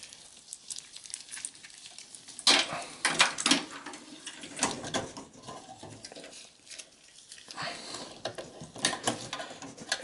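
Power supply cables being handled: plastic Molex and SATA connectors clicking and knocking against each other and the metal case, with rustling of the wires, irregular throughout and busiest a few seconds in.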